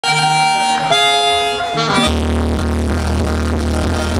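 Live merengue típico: a button accordion plays held chords that change twice, then about two seconds in the full band comes in with bass and rhythmic percussion.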